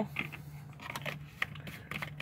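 A steady low hum with a few faint, scattered clicks, the sharpest about one and a half seconds in.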